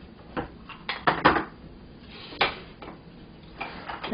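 A few short clinks and knocks of ceramic dishes being moved and set down on a countertop, loudest in a cluster about a second in and once near the middle.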